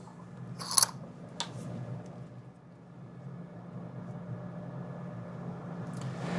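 A short, light clinking clatter about half a second in and a single sharp click about a second later, as a small glass sample vial and paper blotter strips are handled on a lab bench. A steady low hum runs underneath.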